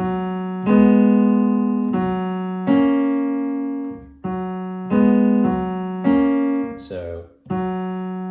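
Kawai digital piano playing a slow series of chords, about eight in all. Each is struck, held and left to fade before the next.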